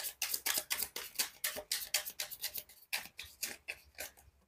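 A tarot deck being shuffled by hand, cards passed from one hand to the other: a quick run of light card slaps and flicks, several a second.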